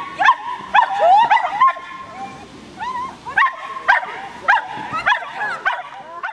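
Small dog barking excitedly over and over, short high yips about two to three a second, with a brief lull a little after two seconds in.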